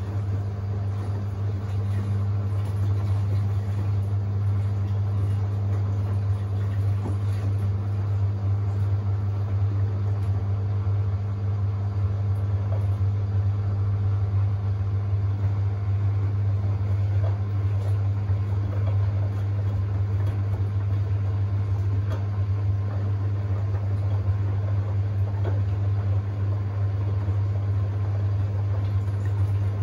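Samsung WW90J5456FW front-loading washing machine in its wash phase, the drum tumbling the wet, soapy load, with a steady low hum throughout.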